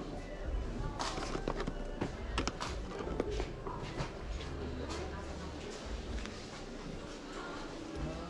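Indistinct voices of people talking in a shop hall, with a cluster of sharp clicks and knocks in the first few seconds.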